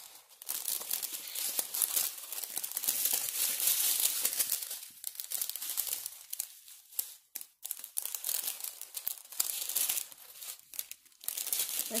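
Small plastic bags of diamond-painting drills crinkling and rustling as they are handled and sorted through, with a short lull a little past the middle.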